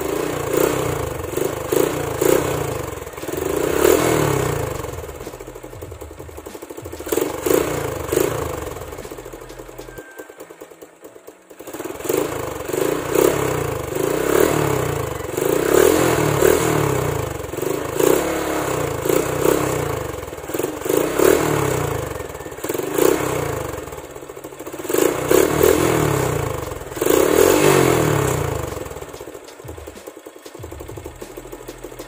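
RS125 motorcycle's single-cylinder four-stroke engine revved in repeated throttle blips through an aftermarket Apido canister exhaust with a big elbow, swelling and falling every second or two. The engine sound drops away briefly about ten seconds in, then the revving picks up again.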